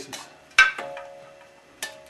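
Two metallic clinks of metal striking metal, a little over a second apart: the first loud and ringing on for about a second, the second lighter with a shorter ring.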